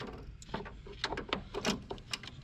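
Metal battery cable clamp being worked onto a battery terminal post: a quick run of small clicks and scrapes.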